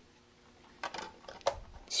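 A CD being set into a portable CD player and pressed down onto its spindle hub: a quick run of light clicks and taps, the sharpest about one and a half seconds in, after a nearly quiet first second.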